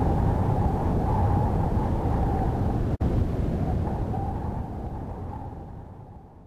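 A steady, loud rumbling drone with no clear tune, broken by a brief cut-out about halfway, then fading away over the last second or two.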